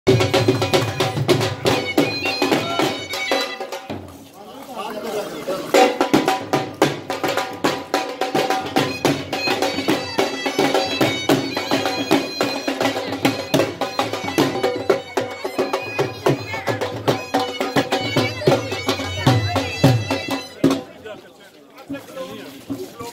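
Traditional folk music: a dhol drum beating under a steady wind-instrument melody. The music dips briefly about four seconds in and stops shortly before the end.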